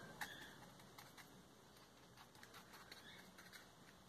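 Faint, irregular light taps of a small paintbrush dabbing paint onto a plastic PET-bottle leaf, over near-silent room tone.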